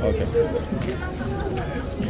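Casino chips clicking lightly a few times and cards being swept up as a blackjack dealer collects a lost bet, over voices and a low steady hum.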